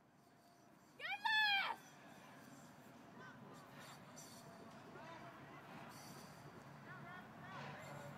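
A single loud, high-pitched shout about a second in, under a second long, its pitch rising and then falling, followed by faint distant voices and low background noise.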